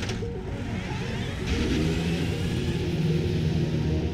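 Toyota TS050 Hybrid race car pulling away and accelerating, its pitch rising from about a second in, with music underneath.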